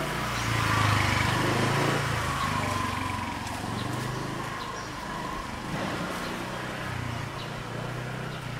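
Street ambience with a motor vehicle engine running close by, loudest about a second in and then slowly easing off.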